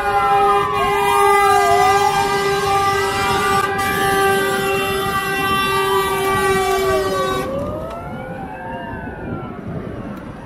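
Several fire engine sirens wailing at once, their rising and falling tones overlapping, together with a long steady horn blast that cuts off about seven and a half seconds in. After the horn stops the sirens carry on and grow quieter.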